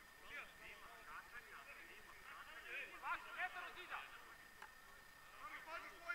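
Faint, distant voices of football players calling out to each other across the pitch.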